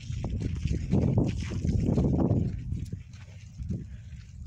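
Footsteps on a dirt and gravel path while a dead gopher on a string is dragged over the ground, scraping along, over a steady low rumble. The noise swells between about one and two and a half seconds in.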